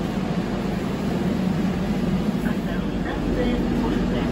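Steady low rumble and hum inside an 81-740/741 "Rusich" metro car, growing a little louder near the end, with faint passenger voices.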